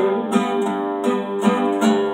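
Acoustic guitar strummed in a steady rhythm, played on its own between sung lines.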